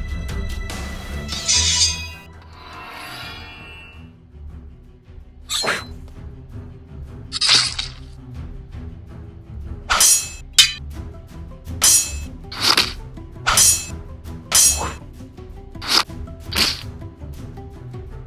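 Sword-fight sound effects over background music: about ten sharp clashing hits starting about five seconds in, coming in quick succession in the second half.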